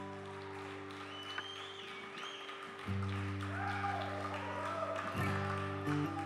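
A live band's opening chords, held steady and stepping up to a louder chord about three seconds in, then shifting again near the end. Whistles and cheers from the audience sound over the top.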